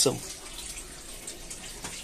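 Water running steadily into an aquaponics settling tank through the system's recirculation hose.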